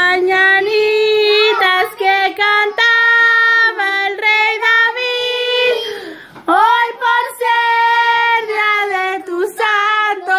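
A group of children's voices singing a song together, holding high notes, with a brief break about six seconds in.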